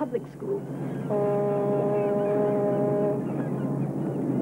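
A boat horn sounds one steady, level blast lasting about two seconds, starting about a second in.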